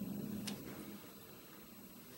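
A single light click of a playing card set down on a tabletop about half a second in, in a quiet small room.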